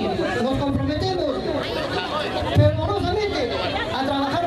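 Speech: a man talking loudly into a handheld microphone, with other voices chattering around him.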